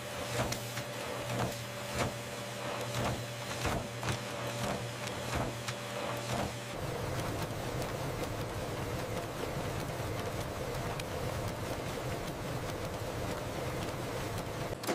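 Bill-handling machinery running with a steady mechanical hum and rhythmic clicking, about two to three clicks a second. About halfway through, the clicking stops and a steadier whir carries on.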